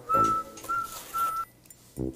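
Three short whistled notes on one steady pitch, each about a third of a second long.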